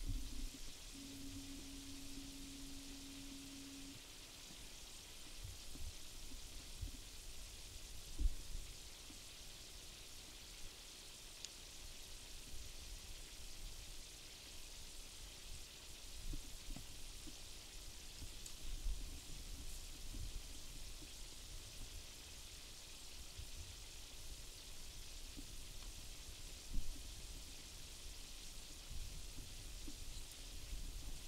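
Faint, steady outdoor hiss with irregular low rumbles of wind on the microphone. A brief steady hum sounds about a second in and lasts about three seconds.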